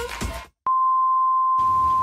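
A steady, single-pitched electronic beep, like a test tone or censor bleep, starting with a click about half a second in and holding for about a second and a half. Static hiss joins under it near the end, as part of a video-glitch transition sound effect.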